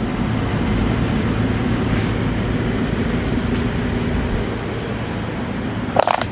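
A heavy diesel engine of roadworks machinery running steadily at idle, a low even drone.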